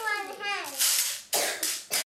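A child's voice making one drawn-out, high, wordless call that slides up and then falls away, followed by three short breathy hissing sounds.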